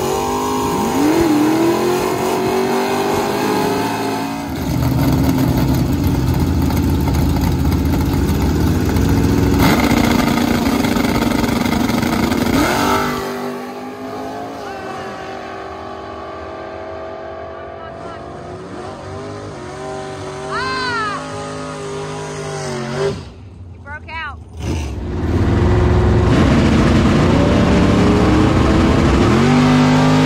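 Chevrolet Vega drag car's engine running loud and lumpy, with pitch rises from throttle near the start and again near the end. In the middle it is quieter, with a short rising-and-falling whine a little past two-thirds of the way in.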